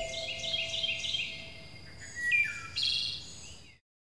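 Small songbirds chirping and singing: a run of short high notes stepping downward, then a few more calls, cut off suddenly shortly before the end.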